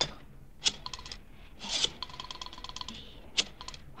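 Telephone being dialed: a rotary dial clicking in quick, evenly spaced runs of about ten clicks a second, one run for each digit.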